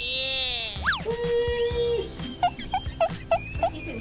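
Comic sound effects dubbed in during editing: a sudden falling whistle-like glide, a quick up-and-down slide, a held tone, then five short pitched blips about three a second.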